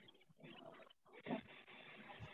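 Near silence: the faint hiss of an open microphone on a video call, with one brief faint sound about a second and a half in.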